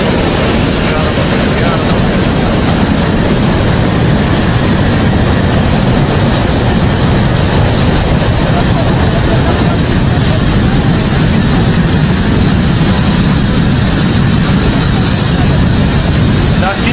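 Loud, steady rush of a fast-flowing flash-flood torrent of muddy water.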